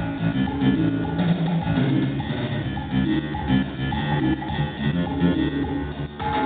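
Instrumental intro of a Latin dance song: guitar over drums keeping a steady beat.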